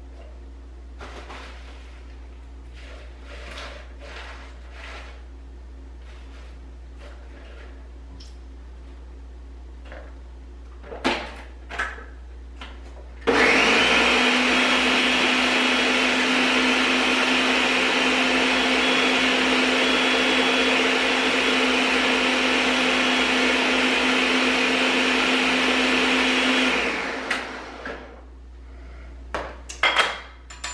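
Faint handling sounds and a couple of sharp knocks, then a countertop blender starts abruptly about a third of the way in. It runs steadily at high speed for about thirteen seconds, blending a smoothie of spinach, frozen fruit and cucumber juice, then winds down.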